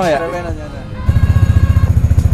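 Vespa Primavera scooter's single-cylinder engine idling with a fast, even exhaust pulse, coming in suddenly about a second in.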